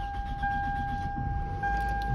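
A 2004 Toyota Camry's dashboard warning chime sounding a steady high tone that breaks off briefly twice, over a low rumble. The key is in the ignition with the warning lights on.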